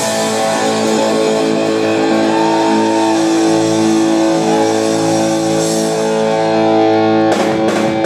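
Live rock band with electric guitars through amplifiers: a chord is held ringing for several seconds, then the full band with drums comes back in hard about seven seconds in.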